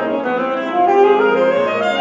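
Saxophone playing a melodic line with grand piano accompaniment, sustained notes moving in pitch.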